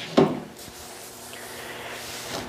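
A plastic 1/16-scale model tractor being turned on a wooden base, giving a steady soft rubbing scrape against the wood. There is one short squeak just after the start.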